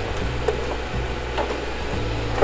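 A utensil moving chicken wings around in an air fryer basket, with a few light taps and scrapes against the basket, over a steady low hum.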